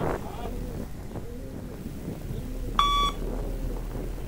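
One short electronic beep from a Luc Léger shuttle-run test recording, about three seconds in, the timing signal that tells the runner to reach the line and turn. Wind is on the microphone throughout.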